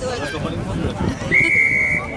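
Rugby referee's whistle: one steady, high blast of under a second, starting over halfway in, over spectators' and players' voices.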